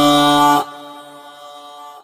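A male voice chanting a shaila holds one long steady note, which cuts off just over half a second in and leaves a fading echo.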